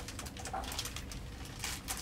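Paper pages of a hardcover picture book rustling as they are opened and turned, in several short rustles, with a brief faint voice-like sound about half a second in.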